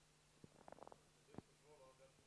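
Near silence: a steady low hum, a few faint clicks about half a second in and again near the middle, and a faint, distant voice off-microphone toward the end, an audience member asking a question.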